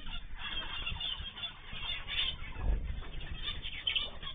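A mixed aviary of small pet birds, including cockatiels, lovebirds, zebra finches and canaries, chattering with many short calls overlapping. There is a low thud a little past halfway.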